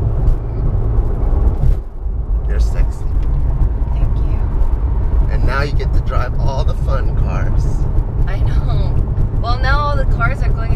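Porsche 911's flat-six engine and road noise heard from inside the cabin at cruising speed, a steady low drone with a brief dip about two seconds in.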